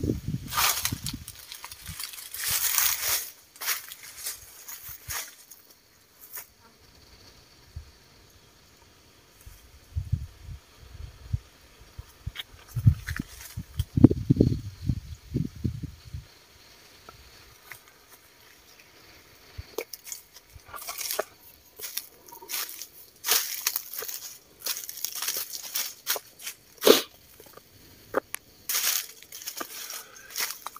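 Footsteps crunching and rustling through dry fallen leaves and grass, in uneven clusters near the start and through the last third. Around the middle, low rumbling gusts of wind buffet the microphone.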